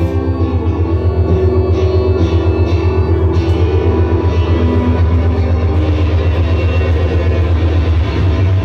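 Live rock band playing an instrumental passage: electric guitar over a loud, sustained bass note that pulses steadily a few times a second.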